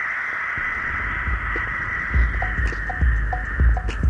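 A track change in a DJ mix: a steady hissing tone fades out while a booming drum-machine bass beat comes in about a second in, with short pitched blips joining the rhythm about halfway through.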